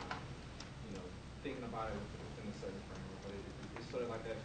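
A person speaking at a low level in a room, the words not made out, with a few light clicks.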